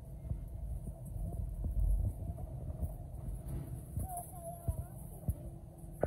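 Cabin noise of an Airbus A220-300 taxiing: a steady low hum from its Pratt & Whitney PW1500G turbofans at taxi power, broken by irregular dull thumps as the landing gear rolls over the taxiway.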